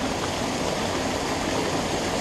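Small woodland stream running over rocks: a steady rush of flowing water.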